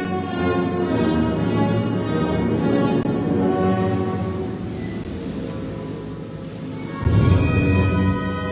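Band music with brass and drums playing slow, held chords, with a loud drum stroke about seven seconds in.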